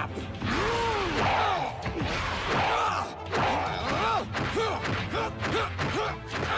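Anime fight soundtrack: a run of swooping sound effects, each rising and falling in pitch, about two a second, over background music.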